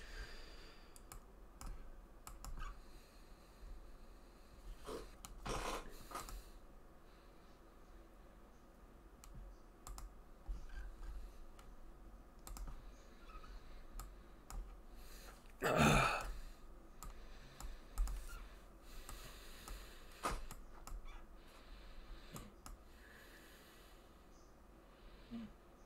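Faint, sparse clicking of a computer keyboard and mouse, with a few short louder bursts of noise, the loudest about two-thirds of the way through.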